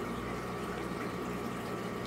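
Aquarium filter running: a steady wash of moving water with a faint even hum.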